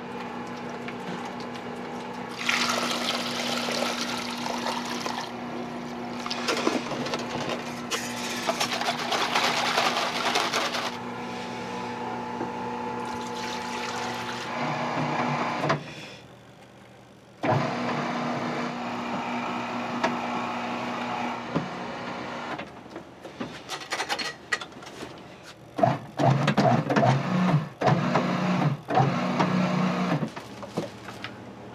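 Electric udon dough mixer running with a steady motor hum while liquid is poured in onto the flour with a rushing splash. The machine cuts out briefly about halfway through and starts again. Near the end, clumps of dough knock and tumble irregularly in the stainless trough.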